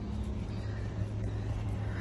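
A steady low hum of an idling vehicle engine.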